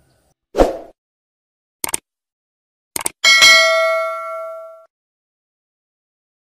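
Subscribe-button animation sound effects: a short whoosh, two pairs of quick mouse clicks, then a single bright bell ding that rings out for about a second and a half.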